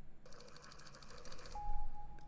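Closing sound effect of a K-pop music video, played back quietly: a rapid, even run of clicks, about a dozen a second, lasting just over a second, followed by a single steady beep.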